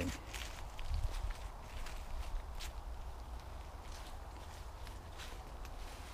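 Footsteps walking over leaf litter and soft ground, a series of irregular soft crunches, over a low steady rumble.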